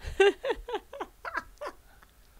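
A woman laughing: a run of short, falling-pitched bursts, about four a second, that fade out.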